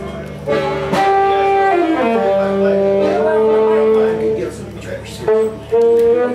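Live band music: long held melody notes step up and down over a sustained low note, with a slide downward about two seconds in.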